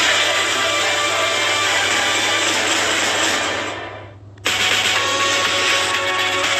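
TV channel ident music with a dense, rushing, noisy layer. It fades out about four seconds in, then a new jingle cuts in abruptly half a second later.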